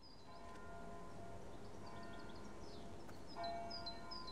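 Faint bell ringing: struck near the start and again about three seconds in, each stroke ringing on as a steady chord of tones. Short high bird chirps sound over it.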